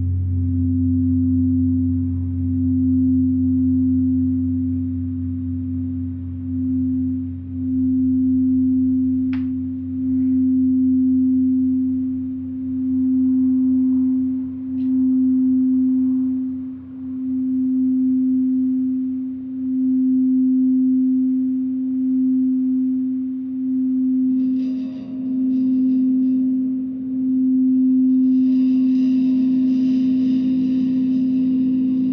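Frosted quartz crystal singing bowl being rimmed with a mallet, holding one steady tone that swells and dips every second or two. A deep gong hum fades away underneath, and from about twenty-four seconds in a gong's shimmering wash comes in.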